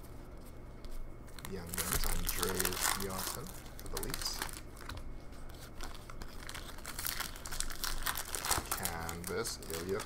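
Stacked trading cards being thumbed through one by one, the stiff cards sliding and flicking against each other in a run of quick papery clicks and rustles. A man's voice murmurs twice, once early and once near the end.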